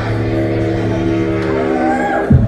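One steady, low held note with a stack of overtones, starting abruptly as the dance track cuts off, from the performer's pre-made lip-sync mix over the bar's sound system; a higher tone swoops upward near the end.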